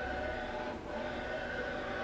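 1989 Matsuura MC-510V vertical machining center traversing its table on the X axis, its servo drives giving a steady whine of several tones over a low hum, dipping slightly a little under a second in.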